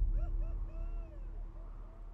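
Fading close of an IMAX trailer's soundtrack: a low rumble dies away while a handful of short tones, each rising then falling in pitch, sound one after another and grow fainter.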